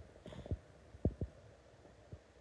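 Dull low thumps: one about half a second in, then a quick pair a little after a second.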